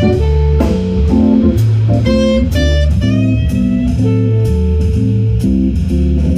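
Live jazz band playing: electric guitar, saxophone and keyboard over a low bass line, with drum kit and regular cymbal strokes.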